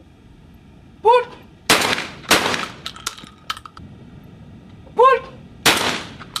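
A shouted "Pull!" about a second in, followed by two shots about half a second apart from a Baikal semi-automatic 12-gauge shotgun, each ringing out briefly. About four seconds later comes another shouted "Pull!" and a single shot near the end.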